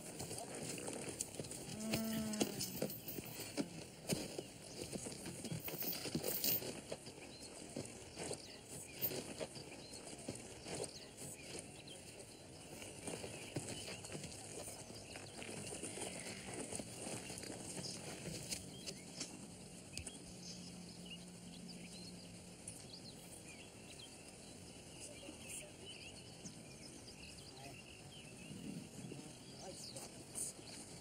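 Quiet film-scene soundtrack of scattered footsteps, knocks and rustles, with a short wavering cry about two seconds in and a faint steady low hum in the middle.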